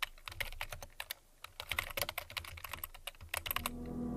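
Computer keyboard typing: rapid, irregular key clicks. Near the end, a low sustained musical chord begins to swell in.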